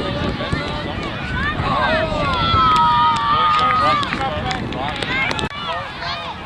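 Children's and spectators' voices shouting at a youth soccer game, with a long held high-pitched shriek about two seconds in. The sound drops out briefly near the end.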